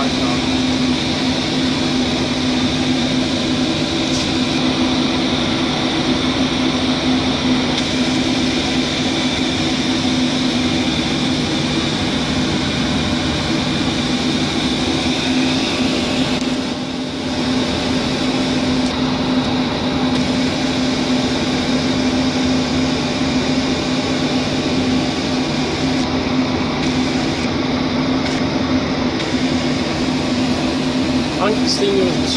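Boeing 737 flight-deck noise in flight: a steady rush of air with a low, even hum under it, briefly softer a little past halfway through.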